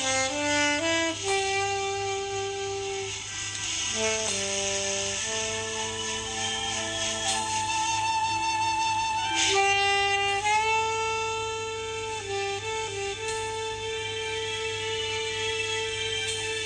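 Saxophone playing a slow melody, mostly long held notes with a few quick ornamented turns between them.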